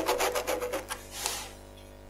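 Ballpoint pen scratching back and forth on a plastic sheet while tracing around a hexagon tile, quick rasping strokes about ten a second that stop about a second and a half in. The pen is failing to leave a line on the smooth plastic.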